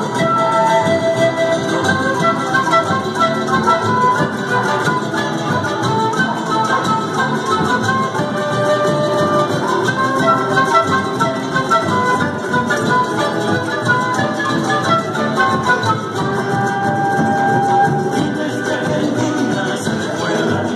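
A live Andean folk ensemble playing an instrumental piece: a flute carries a melody of held notes over harp and drum accompaniment.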